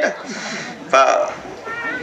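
A man's voice preaching, with a spoken burst about a second in, and near the end a short, thin, high-pitched meow-like cry.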